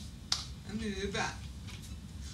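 A sharp slap of hands striking together during signing, about a third of a second in, followed by a woman's brief wordless vocalizing that rises and falls in pitch.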